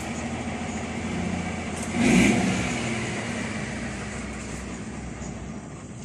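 A motor vehicle passing: a steady noise that swells about two seconds in, then slowly fades.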